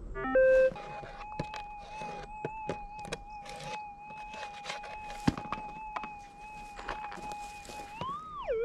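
Minelab GPX 6000 metal detector gives a short falling run of beeps about half a second in, then holds a steady tone, with scattered sharp clicks of rocks and pans being handled.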